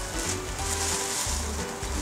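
Packaging rustling as it is handled, over soft background music with held notes.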